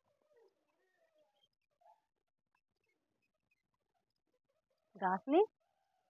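Near silence for about five seconds, then two short utterances from a person's voice, the second rising in pitch.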